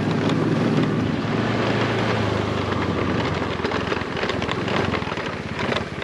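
Motorcycle engine running steadily under way, with wind noise on the microphone.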